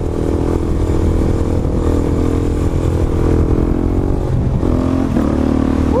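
A 2009 Suzuki DR-Z400SM supermoto's single-cylinder four-stroke engine running at a steady pitch under throttle through a wheelie. About four and a half seconds in the engine note dips and wavers, then settles lower.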